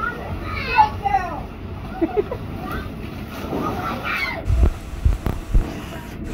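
Children's voices, high-pitched calls and chatter, at play on a wet inflatable slide, with a few low thumps in the second half.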